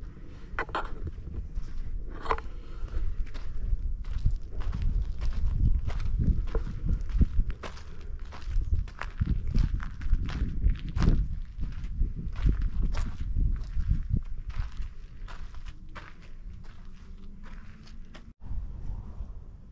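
Footsteps of a person walking on a dry, sandy dirt path at an ordinary walking pace, becoming quieter over the last few seconds.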